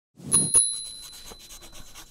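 A bicycle bell rings twice in quick succession, and its ring slowly fades. A scratchy brushing sound runs under it and carries on to the end.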